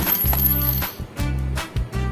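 A sharp metallic coin clink right at the start, ringing for about a second, over background music with a steady pulsing bass line.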